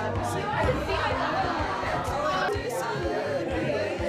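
Party chatter: several people talking at once, with music playing in the background.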